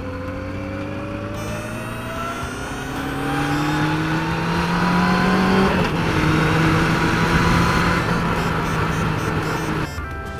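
Yamaha FZR600 motorcycle's inline-four engine pulling under acceleration, its pitch climbing steadily, then dipping briefly about six seconds in and holding steady, with wind noise on the microphone.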